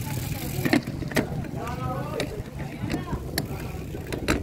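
Bicycle riding along a wet concrete road, heard from the handlebar: a steady rush of tyres and wind broken by about six sharp knocks and rattles over bumps. A voice is heard briefly about halfway through.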